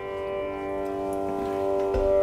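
Steady tanpura drone holding the pitch, with a single knock near the end as a metal flask is set down on the table.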